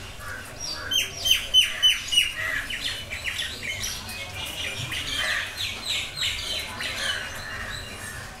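Felt-tip marker squeaking on paper as a line of text is written: a rapid series of short, high squeaks, each falling in pitch, about four a second. They start about a second in, are loudest early on and tail off near the end.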